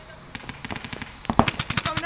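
Paintball markers firing: scattered single shots, then a rapid string of about ten pops in the last second.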